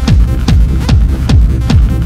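Electronic dance music with a steady, driving kick-drum beat.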